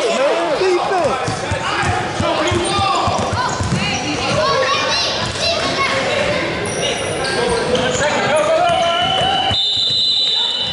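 A basketball being dribbled on a hardwood gym floor during a youth game, with players and spectators shouting and calling out in a large, echoing gym. About nine and a half seconds in, a steady high referee's whistle starts.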